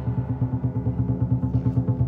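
Lion dance percussion: the big drum beaten in fast, even strokes, with a low steady ringing tone beneath and the cymbals nearly silent.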